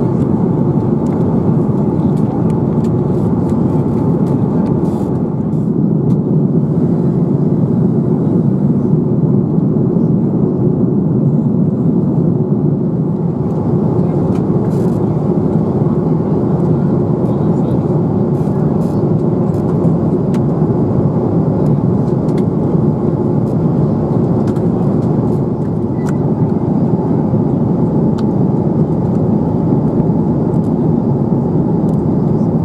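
Airbus A330-300 cabin noise in flight: a steady, loud low rush of engines and airflow, with faint small clicks over it.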